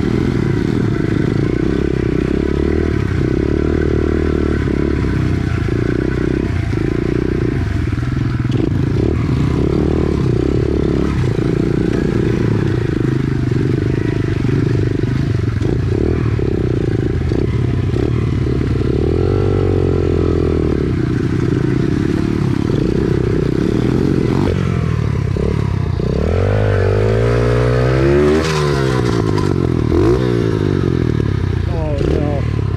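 SSR pit bike's small single-cylinder four-stroke engine running steadily while it is ridden through tall grass. Near the end the engine revs up and down several times in quick succession.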